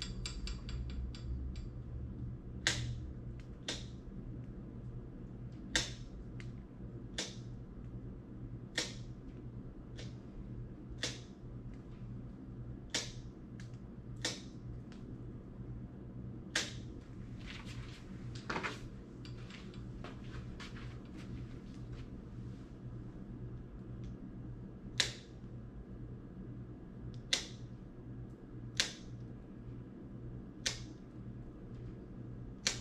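Dog nail clippers snipping through a large dog's toenails: sharp single clicks every second or two, some in quick pairs, over a steady low hum.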